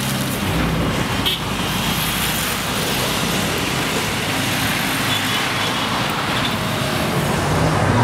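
Steady city road traffic: cars passing on an avenue, a continuous hiss with a low rumble underneath.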